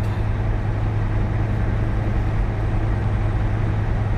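A semi-truck's diesel engine and tyre noise heard from inside the cab while it cruises through a highway tunnel: a steady drone with a strong low hum.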